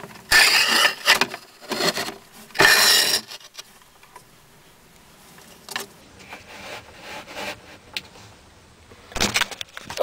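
Slate slab being slid across other slate tiles: two loud scrapes in the first three seconds and a shorter one between them, then a few light clicks as it settles.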